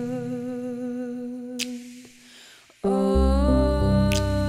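A female singer holds a long note with vibrato over a sustained keyboard chord. It fades almost to silence about two seconds in, and then the band comes back in with a keyboard chord and deep bass shortly before the end.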